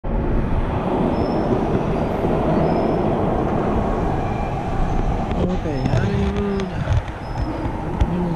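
Loud, steady rumble in an underground subway station, easing off about five and a half seconds in.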